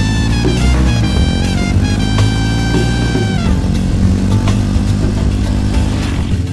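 Soundtrack music with held notes that stop about halfway through, over a Jawa motorcycle engine running at riding speed.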